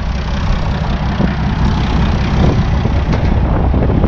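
Diesel engine of a farm tractor fitted with a log-loading crane, idling steadily with a low rumble.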